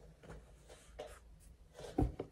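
Faint rustling and brushing of hands and fabric as a cap is put on, a few soft rustles spread through the moment.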